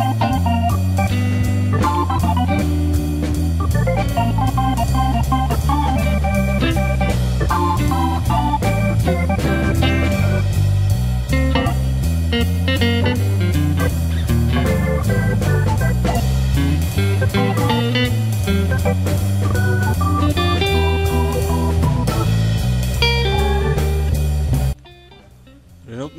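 Background music with a steady beat and heavy bass, stopping abruptly about a second before the end.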